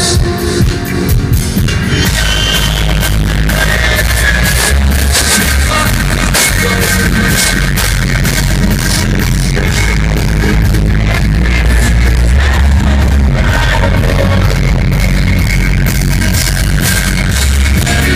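Live rock band playing loud through a festival PA: electric guitar, drums and heavy bass, recorded on a phone in the crowd.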